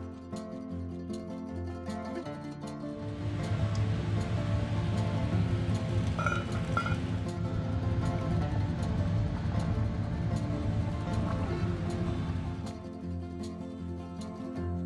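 Soft plucked-string background music; from about three seconds in until near the end, a louder low rumbling noise of a lidded pot of water at the boil runs under it.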